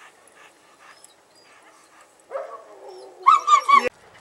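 A dog whines from about two seconds in. Near the end come three loud, high yelps in quick succession, which cut off suddenly.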